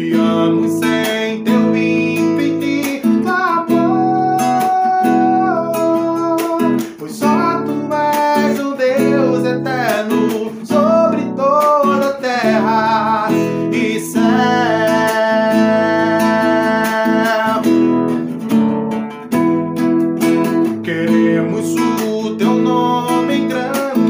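Acoustic guitar strummed steadily under a man singing long held notes that glide up and down between pitches, in a slow worship song.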